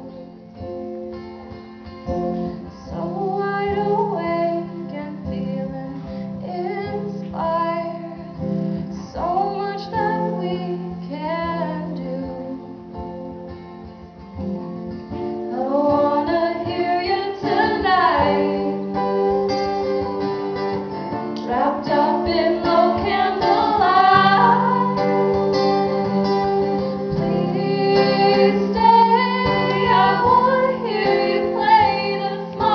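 Female singing of a blues song, accompanied by two strummed acoustic guitars. About halfway through, the music grows fuller and louder.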